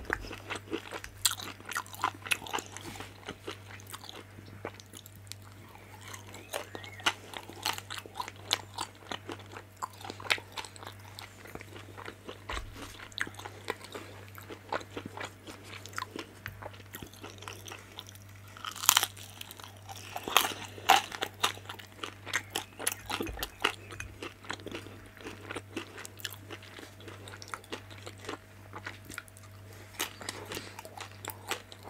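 Close-miked biting and chewing of crispy pan-fried vegetable dumplings: a steady run of small crunches and mouth clicks, with the loudest crunches about two-thirds of the way through. A faint steady low hum sits underneath.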